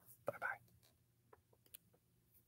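A man's brief, soft whispered sound about a quarter second in, followed by a few faint clicks.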